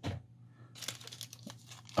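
Small clear plastic zip-lock bag crinkling as it is picked up and handled, with a short knock at the start and scattered crackles in the second half.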